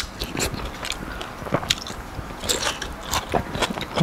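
Close-miked eating sounds: a person chewing and biting food eaten by hand, with irregular crisp clicks and crackles of the mouth and food.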